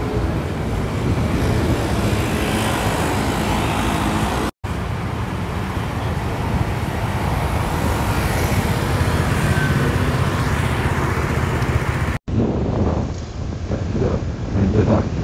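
Street traffic at a city intersection: scooter and car engines running and passing in a steady, dense noise. It cuts out abruptly twice, about four and a half seconds in and near the end.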